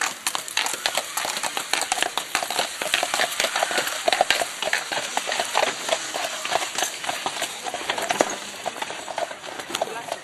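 Two draught horses' hooves clip-clopping on a gravel path as a horse-drawn carriage passes close by, louder in the middle and fading toward the end.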